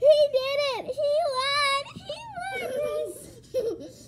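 A child's high-pitched voice squealing without words: long held notes that waver in pitch for about two seconds, then shorter cries.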